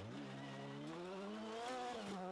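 A car's engine heard faintly as it approaches, its pitch rising slowly and steadily.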